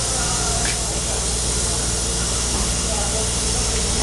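Steady background noise: an even hiss over a constant low hum, with faint voices in the background.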